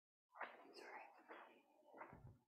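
Faint whispered speech, low and brief, as a handheld microphone changes hands.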